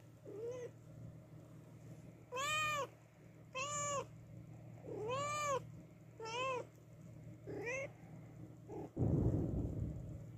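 Scottish Fold mother cat meowing loudly and repeatedly, six calls that each rise and fall in pitch; she is calling after losing her newborn kittens. Near the end, a loud rustle of fur right against the microphone.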